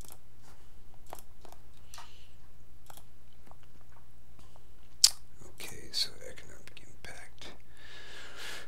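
Small mouth and breath noises close to a desk microphone over a low steady electrical hum, with a single sharp click about five seconds in, as of a computer mouse button.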